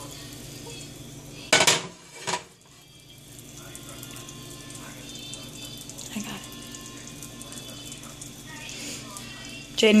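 Butter sizzling softly in a nonstick frying pan over a gas burner as it heats. Two sharp clanks come about one and a half and two and a half seconds in as the pan is moved on the metal burner grate.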